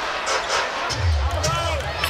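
Arena sound-system music with a heavy bass line that comes in about a second in, over a steady basketball-arena crowd din.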